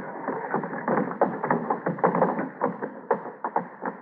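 Radio-drama sound effect of the pursuing soldiers arriving: a quick, irregular run of knocks and clatter like hurried footsteps, with dramatic music under it.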